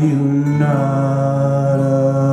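A man's voice holding one long, low sung note over acoustic guitar, near the close of a live folk song.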